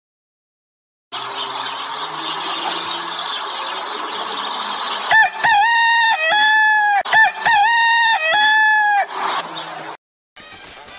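Rooster crowing twice, two identical cock-a-doodle-doo calls with long held notes, after a few seconds of rough, noisy sound.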